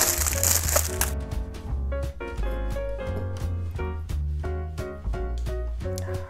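Thin clear plastic packaging crinkling loudly as the tongs are pulled out of their bag, for about the first second, over background music with a steady beat that carries on through the rest.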